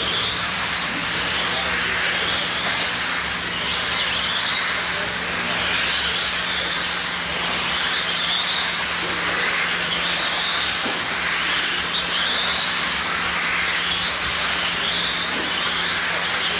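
Several radio-controlled sprint cars racing on a dirt oval, their electric motors whining high and rising and falling in pitch, overlapping, as each car accelerates down the straights and lifts into the turns. A steady low hum runs underneath.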